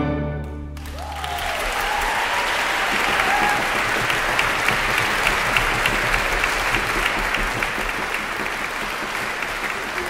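A violin soloist and orchestra end a concerto on a final chord that cuts off less than a second in, and audience applause follows and keeps going.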